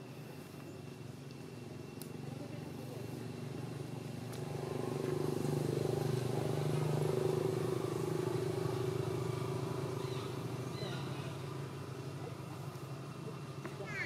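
A motor vehicle engine passing by, its low hum swelling about five seconds in and fading away over the following seconds.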